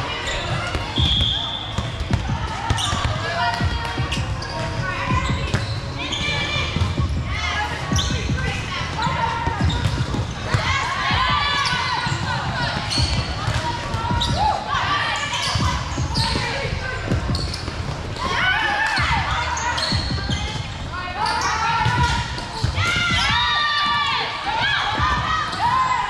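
Indoor volleyball rally in a large gym: the ball being struck and players' feet hitting the court, with repeated knocks, under girls' voices calling out across the court and echoing in the hall.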